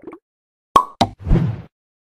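Cartoon-style sound effects of an animated end screen: two sharp pops about a quarter second apart, then a short plop lasting about half a second.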